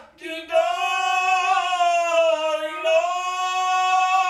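A boy's high voice with a man's voice singing Jewish cantorial chant (chazzanut) a cappella, in long held notes with slow ornamented turns. There is a brief break for breath just after the start.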